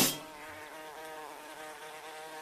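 Bee buzzing sound effect in a break of a song, a steady drone that wavers up and down in pitch just after the music drops out.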